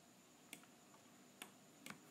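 Near silence with three faint, short clicks of a computer mouse being operated.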